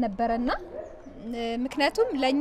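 A woman talking into a microphone, in short phrases with a pause in the middle.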